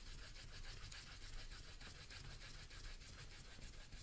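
Stencil brush bristles scrubbing in small circles over a stencil and painted wood, a faint brushing with a quick, even rhythm of strokes.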